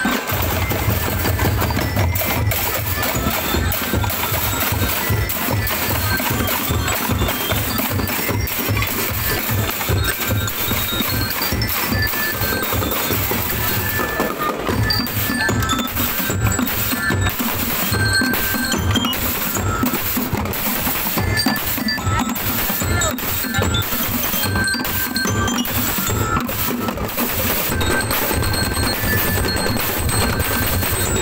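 A marching street percussion band playing a continuous loud rhythm: deep thuds from painted plastic barrels and drums, snare drums, and short ringing notes from a mallet-struck metal keyboard. The pattern changes briefly about halfway through.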